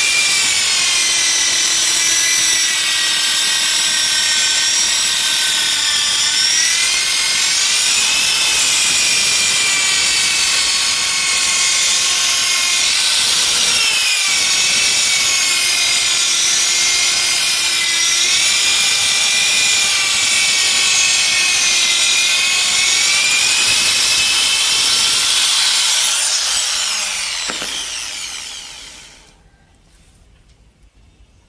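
Electric rotary polisher fitted with a sandpaper disc, sanding a ceramic floor tile: a steady, loud motor whine whose pitch wavers slightly as it is worked. About 26 seconds in it is switched off and the whine falls in pitch as the motor winds down.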